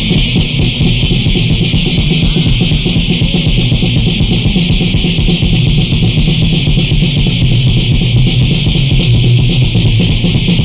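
Thrash/death metal played by a band: distorted electric guitar over a fast, dense, unbroken beat. It is a rough, lo-fi home recording made on a four-track cassette recorder.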